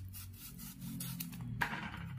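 Kitchen knife sawing through watermelon rind in several short scraping strokes, the loudest stroke near the end.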